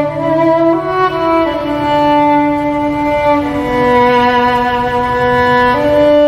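A small string ensemble of violins and cello playing a slow passage of long held notes, the chords changing only every second or two.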